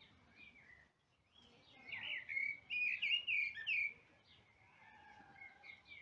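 A recording of small birds singing in short chirped phrases, loudest in a quick run of phrases from about two to four seconds in.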